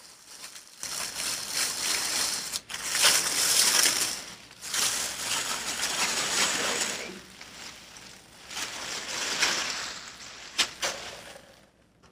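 Sheets of wrapping paper rustling and crinkling as they are unfolded and handled, coming in several long bursts with a couple of sharp clicks between them.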